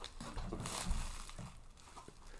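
Thin plastic bag crinkling faintly as a figure is handled and pulled out of it. It goes quiet about a second and a half in.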